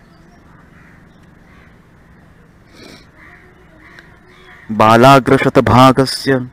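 Low room tone for about four and a half seconds, then a man's voice starts reciting a Sanskrit verse in a drawn-out, chanting delivery.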